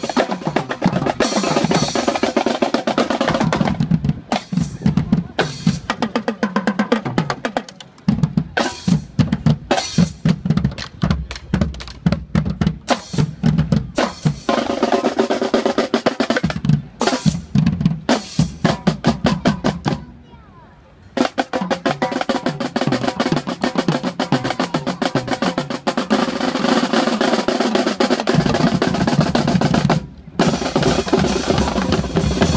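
Marching band drumline playing a fast cadence on Pearl snare drums, tenor drums, bass drums and cymbals, with quick strokes and rolls. The drums stop together for about a second about two-thirds of the way through, then come back in.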